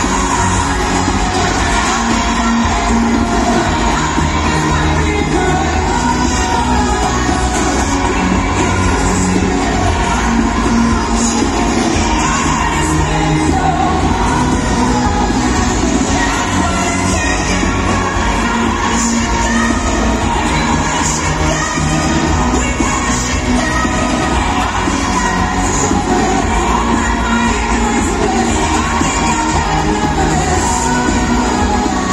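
Live pop music from a full band with a singer over a stadium PA system, loud and continuous, with a crowd cheering.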